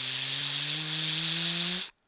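Sci-fi blaster charge-up sound effect: a hiss over a low hum that rises slowly in pitch, cutting off suddenly just before the shot.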